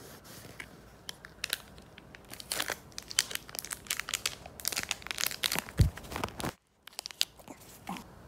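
Close crackling and rustling right at the phone's microphone as a Maltese's muzzle and fur brush against it, with one louder low thump a little before six seconds.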